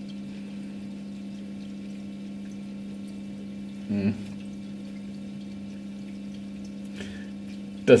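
Peristaltic aquarium dosing pump running with a steady hum while it doses nitrate solution, a slow pump that may be drawing in air. A short vocal sound cuts in briefly about four seconds in.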